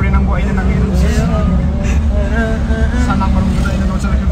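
Steady low rumble of a car's engine and road noise heard from inside the cabin, with men's voices over it.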